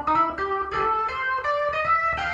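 Instrumental music: a plucked-string melody of single notes following one another, about four a second.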